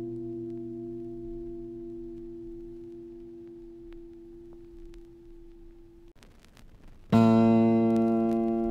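Instrumental music: a sustained guitar chord rings and slowly fades, stops about six seconds in, and after a short near-silent gap a loud new chord is struck and rings on.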